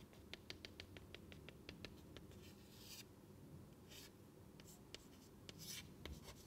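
Chalk tapping quickly on a chalkboard to mark out a dotted line, about six or seven faint taps a second, followed by a few short scratching chalk strokes.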